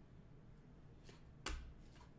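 A stack of trading cards handled in the hands, quiet at first, then a faint click and one sharp snap about one and a half seconds in as a card is slid off the stack.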